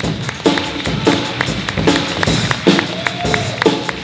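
Jazz big band playing live, the drum kit and rhythm section carrying a steady beat of sharp hits under low chord stabs about every half second.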